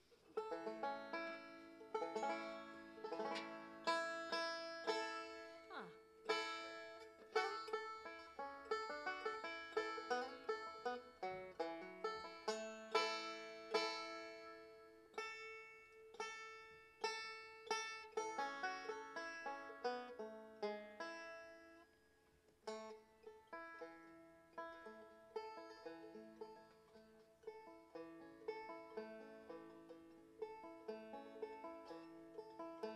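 Solo banjo picked with fingerpicks: a steady run of plucked notes ringing out, starting just after the start, thinning out briefly about 22 seconds in, then picking up again.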